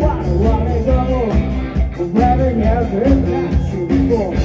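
Live rock band playing: electric guitars, bass and drums, with a sung lead vocal over a steady beat.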